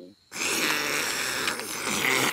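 Cartoon sound effect of one long slurp as a bowl of spaghetti with clams is gulped down, starting about a third of a second in.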